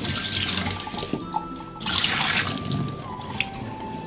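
Tap water running into a bowl in a stainless-steel kitchen sink while shrimp are rinsed by hand, loudest in two spells: during the first second and again around two seconds in.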